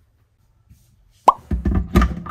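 A short hollow pop a little over a second in, then a run of knocks and rattles as a white electric kettle is handled on its base.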